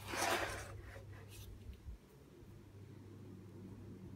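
Brief rustling handling noise at the start, then a faint, steady low hum of an electric fan motor running.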